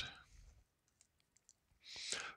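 Near silence: room tone with a few faint, scattered clicks, and a soft intake of breath near the end.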